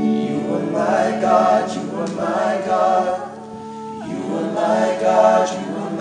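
A small group of voices singing together in free, spontaneous worship, in long overlapping held phrases over a steady low sustained note.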